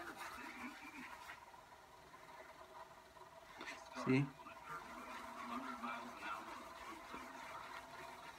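Microfiber towel rubbed over short curly hair to twist it: a faint rustling.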